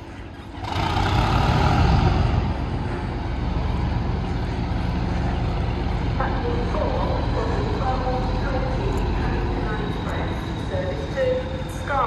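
Class 37 diesel locomotive 37424 starting up: its English Electric V12 diesel engine fires about a second in and runs on steadily.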